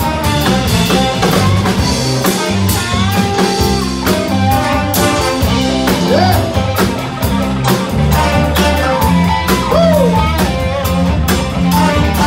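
A live soul-blues band playing a steady groove: drum kit, electric bass, electric guitar, and trombone and saxophone, with a few pitch bends from a lead voice or guitar.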